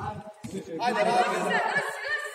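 Speech only: a shout of "ajde" and overlapping chatter of voices.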